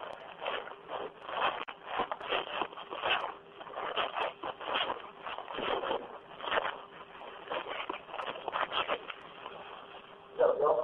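Irregular muffled rustling and scraping over a telephone line, like a phone being handled or rubbing against clothing during the call.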